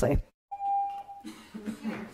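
A single electronic chime: one steady, clear tone lasting under a second, starting about half a second in, with faint murmuring voices after it.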